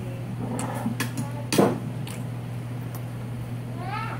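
Handling noise from a hand at the phone: scattered clicks and one loud knock about one and a half seconds in, over a steady low electrical hum. Near the end comes a short pitched cry that rises and then falls.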